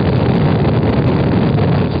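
Saturn V rocket's five F-1 first-stage engines at full thrust just after liftoff: a loud, steady, dense rumble, heaviest in the low end.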